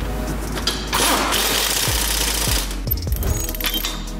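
A pneumatic impact wrench runs for about a second and a half, running down the nut on the newly fitted front ball joint's stud before final torquing. Background music plays throughout.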